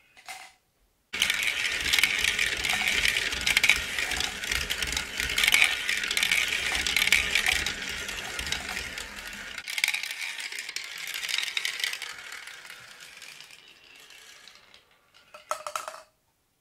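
Marbles rolling and clattering along a toy marble run's plastic and wooden track: a dense, continuous rattle that starts suddenly about a second in. It grows quieter over the last several seconds and fades out, with a few sharp clicks just before the end.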